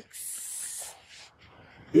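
A short hiss, high in pitch, lasting a little under a second, then faint room sound.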